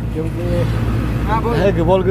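Auto-rickshaw engine running steadily while riding in its open cabin, a constant low drone, with a person's voice talking over it twice.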